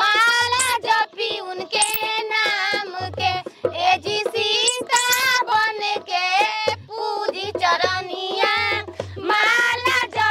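A song: a high-pitched voice sings over music, with a low beat that comes back every second or so.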